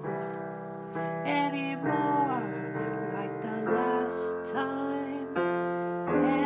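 Piano playing sustained chords of a slow ballad, changing every second or two, with a man's voice singing a held, wavering line over it.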